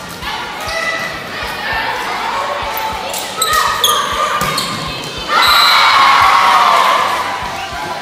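Volleyball rally: a volleyball being struck, with sharp hits clustered around three to four seconds in and players' voices calling. It is followed by a loud burst of players shouting for about two seconds.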